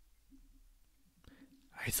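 Near silence: faint room tone with a small click, then a man starts speaking near the end.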